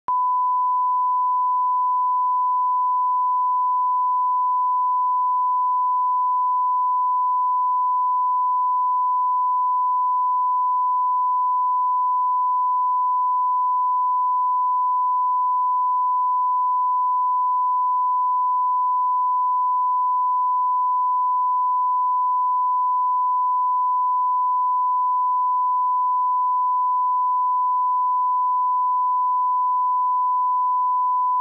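A 1 kHz sine-wave reference tone, the test tone laid under SMPTE colour bars at the head of an edit. It starts abruptly out of silence and holds one unchanging pitch at a steady level.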